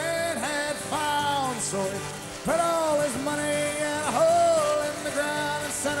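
Live rock performance: a harmonica in a neck rack plays a phrase of bent, sliding notes over a steady guitar and band accompaniment between sung lines.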